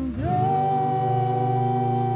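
Voices singing together, rising into one long held note, with an acoustic guitar strummed underneath.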